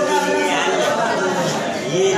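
Speech: a man talking to a small group, with other voices chattering over him.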